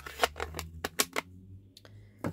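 Light clicks and taps of stamping supplies being handled on a craft desk: a clear acrylic stamp block being set aside and the next item picked up. There are about half a dozen small knocks over a low, steady hum.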